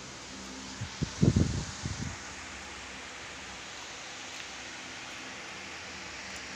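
Steady background hiss, with a short cluster of dull, low thumps about one to two seconds in.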